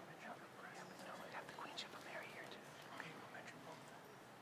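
Faint, indistinct murmured voices and whispering from people exchanging quiet greetings, with a few light clicks.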